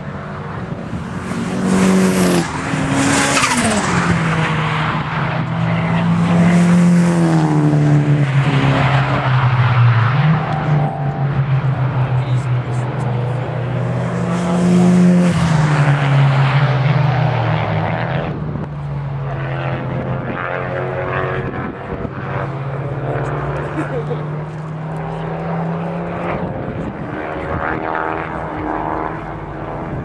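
Several cars driven hard round a race circuit, their engines revving up and down in pitch as they pass by. The loudest passes come a few seconds in and again about halfway, and it settles somewhat after that.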